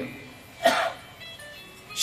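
A faint electronic tune of short high notes starts about a second in, and a brief vocal sound comes just before it.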